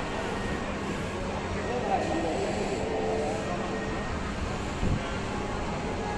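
Indoor mall background: indistinct chatter of passers-by over a steady low hum, with a short low thump about five seconds in.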